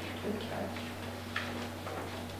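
Quiet meeting-room background: a steady low hum with a few faint small clicks scattered through it.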